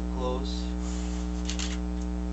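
Steady electrical mains hum, with a brief voiced sound shortly after the start and a short rustle about three quarters of the way through.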